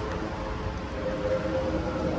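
Steady outdoor background noise with a low rumble and a constant, unchanging hum; no distinct event stands out.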